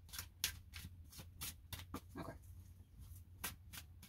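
A deck of cards being shuffled by hand: a quick, uneven run of soft card flicks and slaps, several a second, with a pause near the middle.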